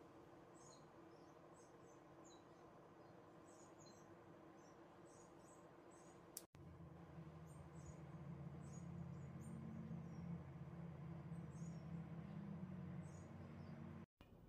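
Near silence with faint, scattered high bird chirps in the background. After a brief dropout about halfway through, a low steady hum comes in and grows slightly louder.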